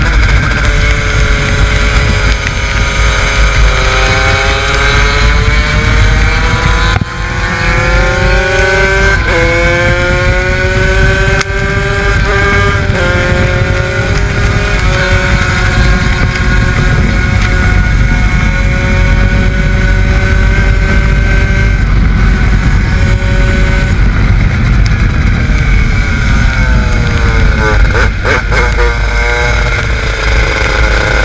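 Honda CR125 two-stroke shifter kart engine heard onboard, revving up through the gears. The rising pitch breaks at upshifts about seven, nine, eleven and thirteen seconds in, then holds high and steady at full speed. Near the end the pitch drops sharply under braking, with a quick series of downshifts.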